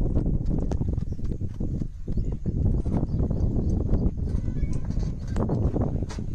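A child's running footsteps on dirt, then knocks and clatter as he climbs into a backhoe loader's cab, over a steady low rumble.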